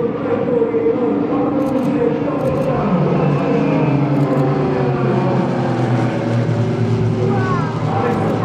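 Piston engines and propellers of a three-plane aerobatic formation, a steady drone whose pitch drifts slowly as the planes fly overhead.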